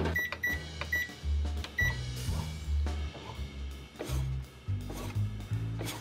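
Bread maker's control panel beeping four short times in the first two seconds as its knead program is set, over background music with a bass line.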